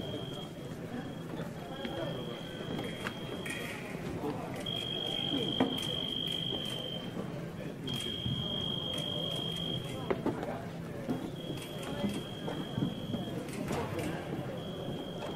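Electric fencing scoring machine sounding a steady high beep again and again, each beep one to two seconds long, about five in all with one brief lower tone: foil touches being registered as the fencers test their weapons on each other before the bout. Voices in the hall run underneath.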